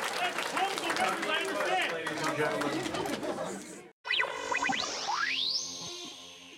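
Hall crowd chatter and voices with scattered clapping, cut off abruptly about four seconds in. An electronic logo sting follows: a few quick falling swoops, then a long rising sweep that levels off into a held high note over sustained chords, fading out.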